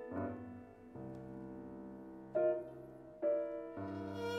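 Grand piano playing alone: four chords struck one after another, each left to ring and fade.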